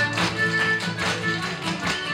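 Live Irish traditional dance music played on acoustic guitars and a bodhrán, with a steady tapping beat about twice a second.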